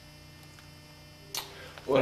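Steady low electrical mains hum in a pause between speech, with a single sharp click about a second and a half in and a man's voice starting right at the end.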